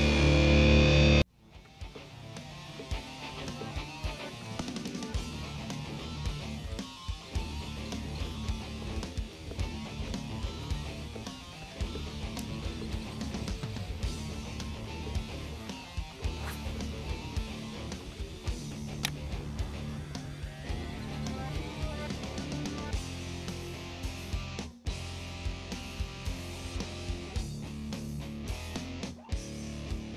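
Background rock music with guitar. A louder passage cuts off abruptly about a second in, and the music carries on steadily.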